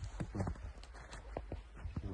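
Footsteps in snow, a few irregular steps a second, with handheld camera movement.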